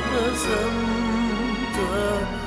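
Man singing an Arabic Christian hymn in held notes with vibrato, over instrumental accompaniment.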